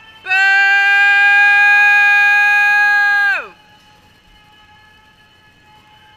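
A loud horn blast: one steady, bright note held for about three seconds that sags in pitch as it cuts off.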